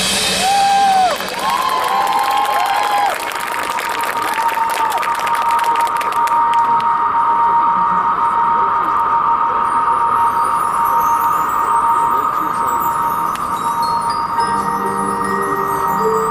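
A marching band's front ensemble between two pieces of its show: a single electronic tone holds steady after the brass stops, with crowd cheering and clapping in the first few seconds. Glockenspiel and mallet runs come in over it in the second half, and lower held notes enter near the end as the next piece begins.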